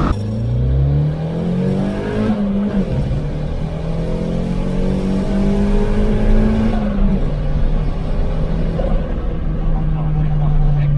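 Turbocharged 1.8-litre 20-valve four-cylinder engine of a VW Lupo, heard from inside the cabin, pulling hard through the gears. Its pitch climbs, breaks and drops at a gear change about two and a half seconds in, and climbs again. Around seven seconds it drops once more and settles to a steadier drone.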